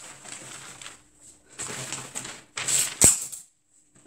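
A large sheet of pattern paper being slid and shifted across a table: rustling in three bouts, with a sharp tap about three seconds in.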